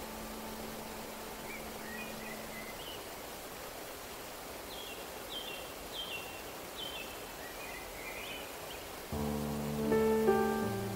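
Waterfall rushing as a steady hiss, with a bird chirping over it in short falling notes, repeated about every half second through the middle. A held musical tone fades out in the first few seconds, and a piano chord comes in near the end.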